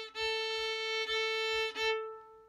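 A violin bowing the open A string: the same A played three times in a row, held notes with brief breaks between them, in the rhythm of the piece's opening phrase.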